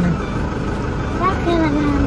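Steady low rumble of a car engine idling, heard from the cabin, with a short held vocal hum near the end.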